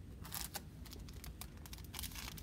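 Sterile gauze packet crinkling as it is picked up and handled: a few short rustles, the strongest about half a second in, then light scattered ticks.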